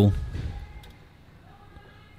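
A man's voice trailing off at the end of a word, then a faint, steady background hum with no distinct event.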